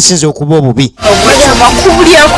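A man's voice speaking, then about a second in, dense background music with overlapping voices comes in.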